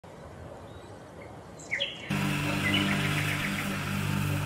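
Birds chirping over faint outdoor background noise. About halfway through, a steady low music bed starts abruptly and continues, with a few more chirps above it.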